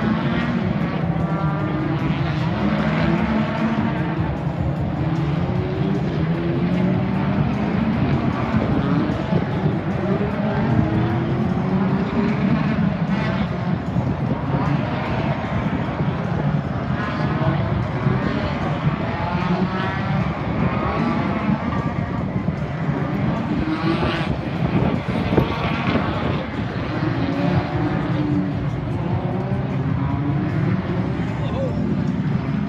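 Several racing cars' engines running together as the pack laps the circuit, a dense, steady engine sound with many overlapping pitches climbing and dropping as the cars accelerate and change gear.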